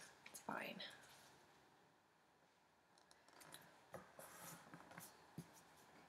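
Mostly near silence, with faint scratchy rubbing and small clicks in the second half from a glue stick and construction paper being handled.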